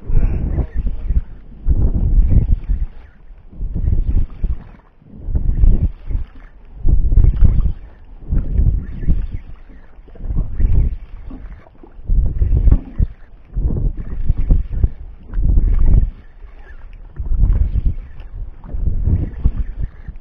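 Rumbling bursts of wind and handling noise on a body-worn camera's microphone, coming in a steady rhythm about every one and a half to two seconds while a spinning reel is cranked to bring in a hooked fish.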